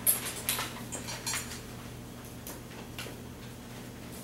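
A cluster of light clicks and clinks of small hard objects being handled, the sharpest right at the start, tapering to a few faint ticks over a steady low hum.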